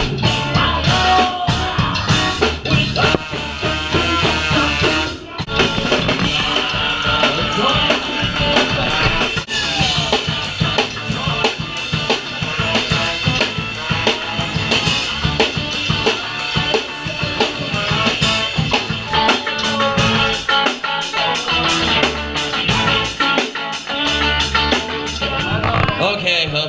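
Live punk-ska band playing loud: drum kit, electric bass and electric guitar together, with no singing. There is a brief break about five seconds in, and the drumming grows denser and faster in the second half.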